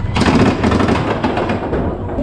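Mine-train roller coaster cars climbing a lift section into a tunnel, with a loud, fast clatter from the track of about ten clacks a second over a low rumble.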